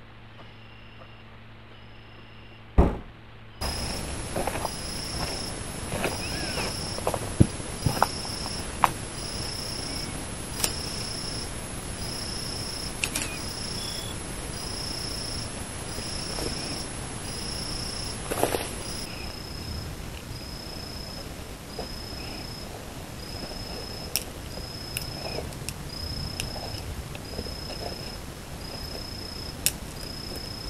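Night insects, crickets or katydids, chirping in a high, steady pulse about once a second, with scattered short clicks and one sharp knock about three seconds in.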